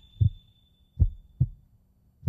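Heartbeat sound effect closing the soundtrack: slow, deep lub-dub thuds in pairs, the two beats of a pair about half a second apart, over a faint low hum.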